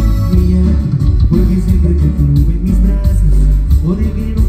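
Live cumbia band playing an instrumental passage of the song over the PA, loud, with a strong bass line and guitar.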